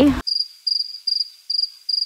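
Cricket-chirping sound effect over otherwise muted audio: short high chirps, about two a second, the stock gag for an awkward silence.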